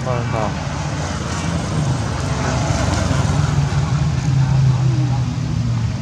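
Steady low hum of a motor vehicle engine, growing louder through the middle and easing toward the end.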